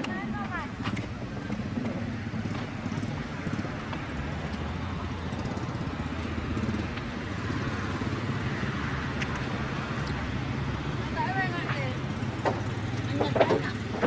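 A steady low engine-like hum runs throughout, with faint voices of people talking in the distance, growing a little clearer near the end.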